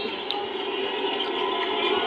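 Basketball arena crowd noise from a TV broadcast, heard through a television speaker: a steady, muffled crowd murmur.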